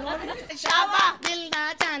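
A voice starts singing held notes about half a second in, with several hand claps a second keeping time along with it.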